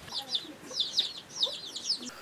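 Chicks peeping: short, high, falling peeps repeated in quick clusters.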